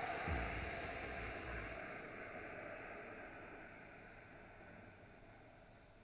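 A long, slow exhale: a steady breathy hiss that fades away gradually over several seconds. It is the drawn-out out-breath that closes a physiological sigh, a double inhale followed by a long exhale.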